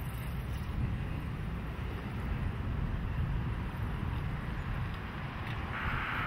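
Outdoor street ambience: a steady low rumble of wind on the microphone and traffic, with a louder hiss coming in near the end.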